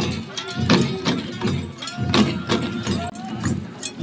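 A troupe beating Garo dama long drums by hand for a Wangala drum dance, uneven strokes roughly two or three a second, with voices mixed in.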